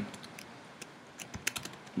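Typing on a computer keyboard: a scattering of key clicks, coming faster in the second second.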